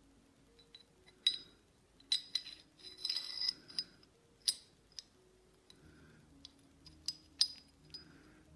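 Steel parts of a Star DKL pistol (slide, barrel and barrel bushing) clinking and clicking against each other as they are handled and fitted. Scattered sharp metallic clinks, each with a short ring, the loudest about a second in, around two seconds, at four and a half seconds and near the end, with a brief scraping rattle around three seconds.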